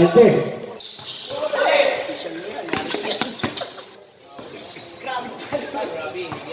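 A basketball bouncing on the court floor, with a run of quick bounces about halfway through, amid voices calling out in a large covered court.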